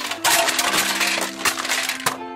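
Cartoon sound effect of a load of parts spilling out of a tipping dump-truck bed onto the ground: a rapid clatter of many small impacts lasting nearly two seconds, over soft background music.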